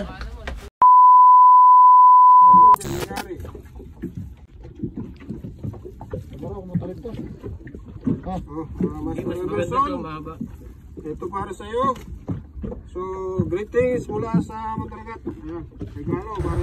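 A single steady beep at about 1 kHz, lasting about two seconds near the start, with all other sound dropped out beneath it: an edited-in censor bleep. After it come voices talking over low boat and wind noise.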